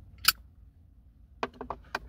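A single sharp click, then a quick run of four or five small clicks about a second and a half in.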